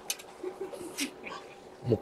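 Faint, short murmurs of a man's voice and a few light clicks, then a man starts speaking near the end.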